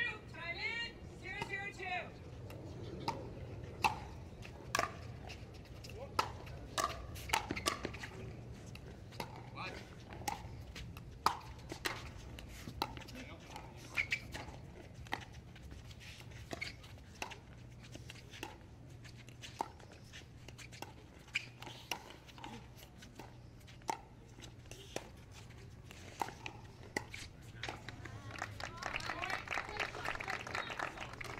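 Pickleball paddles striking plastic balls: a quiet, irregular run of sharp pops and clicks, about one to three a second, with faint voices at the start and near the end.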